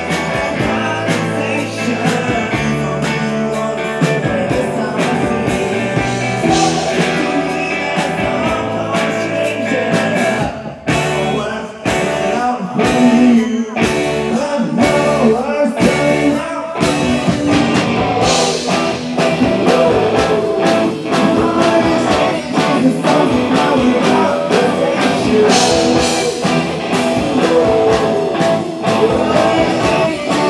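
Rock band playing live: electric guitars and drums, mostly instrumental, with a short drop in the playing about eleven seconds in and singing coming in near the end.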